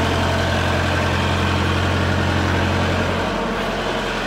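Thermo King trailer refrigeration unit's diesel engine running with a steady low drone, very noisy up close; the low hum weakens a little near the end.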